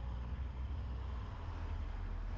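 Steady low rumble of a vehicle engine running, with no change in pitch or strength.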